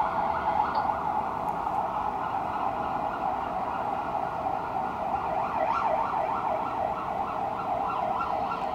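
Police car siren on a marked Ford Crown Victoria Police Interceptor, sounding while the car runs Code 3 to a call. It goes in fast up-and-down sweeps, plainest in the second half.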